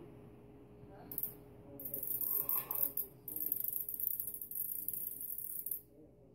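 The wind-up mechanism of a homemade simple-machines mousetrap unwinding after being wound: a rapid, high-pitched whirring rattle. A short burst comes about a second in, then a longer run with a brief break around three seconds in, stopping just before the end.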